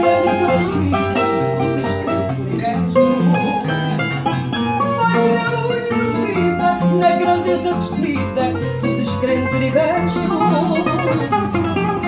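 Portuguese guitar and classical guitar accompaniment playing a fado instrumental passage, with quick plucked melody notes over a steady bass line. A woman's singing voice comes in near the end.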